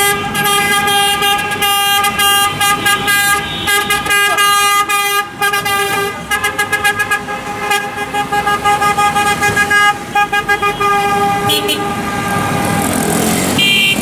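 Many car horns honking together, some held long and others in rapid repeated toots, about four a second in the middle stretch.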